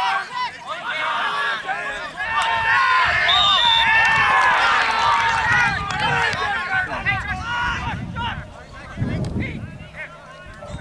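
Many voices shouting and calling over one another from players and onlookers at a field match, building to a loud peak a few seconds in and easing off near the end.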